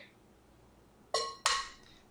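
An egg being cracked on the rim of a glass mixing bowl: two sharp clinks a third of a second apart, each with a short ring, a little after a second in.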